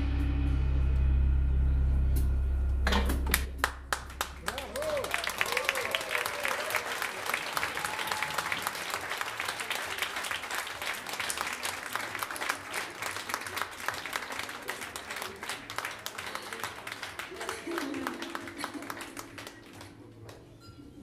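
A live band's final held chord, with a deep bass note, rings for about three seconds and stops, followed by audience applause that thins out toward the end, where a faint held note comes in.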